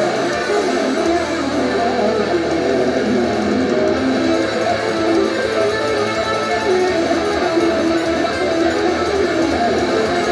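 Loud live band music led by an electric guitar playing a busy run of quickly changing notes.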